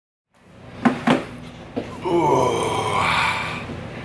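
Close handling noise of a camera being set up: a few sharp knocks and rustles about a second in. Then a man's wordless voice sound in a small room, just before he starts talking.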